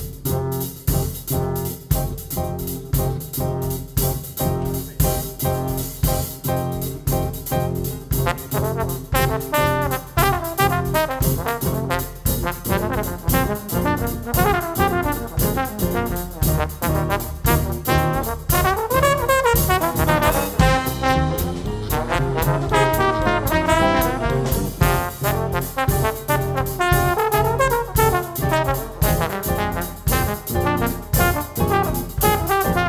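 Small jazz band of two trombones, piano, upright bass and drums playing an up-tempo number with a steady beat. The rhythm section plays alone at first, then the two trombones take up the melody about nine seconds in.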